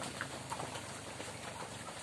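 A flock of ducks feeding from bowls of mash: a busy, irregular patter of bills dabbling and pecking in the feed, with a few short calls.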